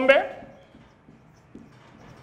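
A man's voice trails off at the start, followed by a pause holding only faint room noise.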